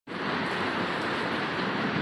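Heavy thunderstorm rain falling steadily on the trees and lawn, an even hiss.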